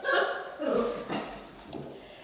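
Eight-week-old doodle puppies giving a few short, high-pitched cries, loudest at the start, while they play.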